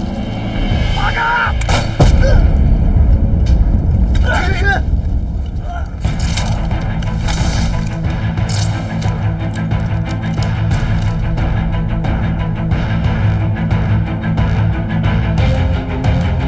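Gunfire in a dramatised battle scene: a loud bang about two seconds in, then shots coming thick and fast from about six seconds on, over dramatic soundtrack music.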